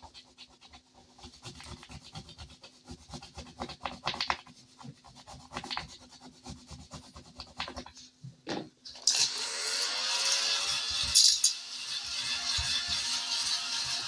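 A thin scratcher tool scraping the coating off a paper scratch-off sheet in short, quick strokes. About nine seconds in, a small battery desk vacuum switches on, its motor whine rising as it spins up, and runs steadily over the sheet to pick up the shavings.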